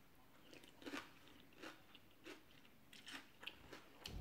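A person chewing a big mouthful of khanom jeen rice noodles in curry, heard up close: a faint run of soft, wet chews and mouth clicks, roughly one every half second.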